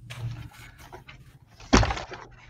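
Rustling and light knocking as plush toys and softballs are handled and shifted on a tabletop, with one loud thump near the end.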